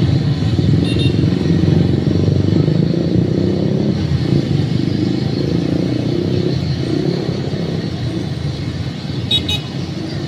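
Small motorcycles and scooters running past on a street, their engine drone easing off in the second half.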